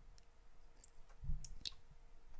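A few light, sharp clicks spread over two seconds, with one soft low thump a little past the middle.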